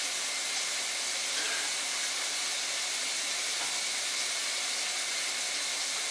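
Steady, even hiss of room background noise, with nothing else standing out.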